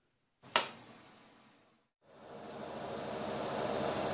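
A sharp click about half a second in as the button is pushed, then from about two seconds a washing machine starting up, its running noise growing steadily louder.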